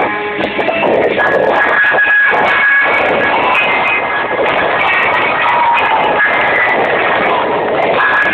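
Loud music playing steadily as the accompaniment to a group dance.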